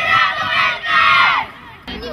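A boys' youth football team shouting its team cry together: two loud group shouts in unison, each falling in pitch at its end.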